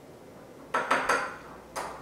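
Metal spoon clinking against a glass bottle as it stirs grated carrot in oil: three sharp clinks close together a little under a second in, and one more near the end.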